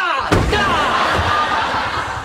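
An apartment door slams shut about a third of a second in, followed by a sustained wash of studio-audience voices that slowly fades.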